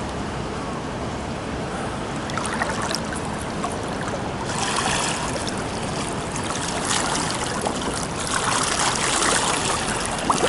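Pool water sloshing and splashing as a swimmer does breaststroke, the kick and arm pull churning the surface. The splashing grows louder about halfway through.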